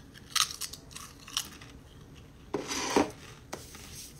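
Biting and chewing a Pringles potato crisp close to the microphone: a few short, sharp crunches, with the loudest crunching a little before the end.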